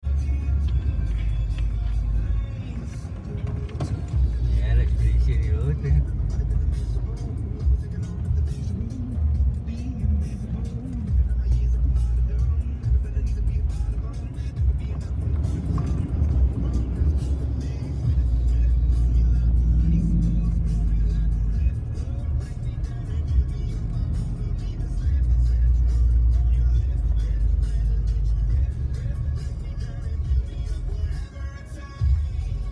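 Ford F-150 FX4 pickup driving a muddy, rutted track, heard inside the cab: a heavy low rumble from the engine and tyres that rises and falls with the ground. Music with a voice plays over it.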